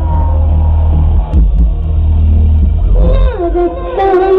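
Live concert music through a large PA, led by heavy bass. A woman starts singing into the microphone about three seconds in.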